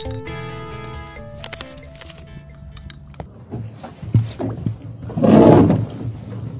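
Background music for about the first three seconds, then camera handling noise: knocks and rubbing against clothing, with a loud rustling burst near the end.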